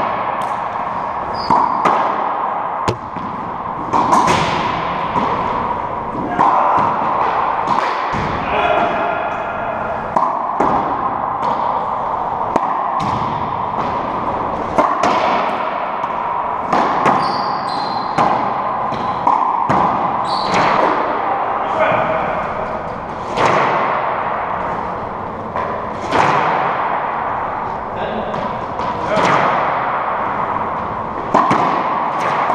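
Racquetball play in an enclosed court: the ball cracks off racquets and smacks the walls and floor at irregular intervals, each hit echoing around the court.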